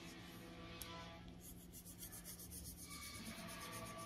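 Colored pencil scratching on paper in quick back-and-forth shading strokes, starting about a second and a half in, over faint background music.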